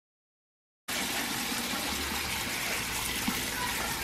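Kitchen faucet running a steady stream of water onto blueberries in a colander, rinsing them; the water starts about a second in.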